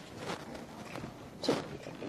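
Faint, irregular shuffling and rustling, with one short spoken word about one and a half seconds in.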